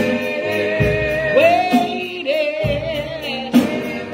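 Gospel singing in a church, with long, wavering sung notes over a steady beat of hand claps.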